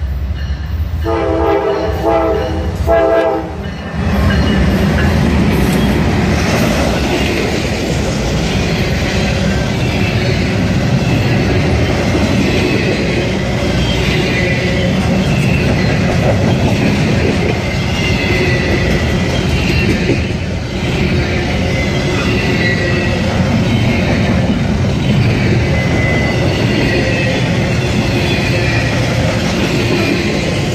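A freight locomotive's multi-chime air horn sounds several short blasts about a second in. Then a double-stack intermodal freight train passes close by, its wheels and cars rumbling and clattering over the rails, with faint wheel squeal in the second half.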